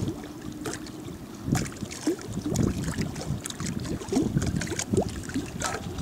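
Small choppy waves lapping and slapping irregularly, with wind on the microphone.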